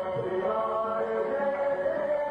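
A Marathi devotional song performed live: a chant-like vocal line over steady held notes of the accompaniment.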